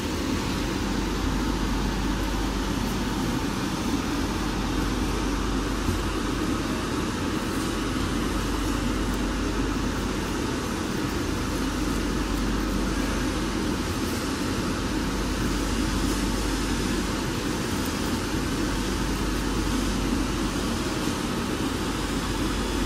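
Steady hum and whir of running machinery with fans, unchanging throughout, with a few faint ticks.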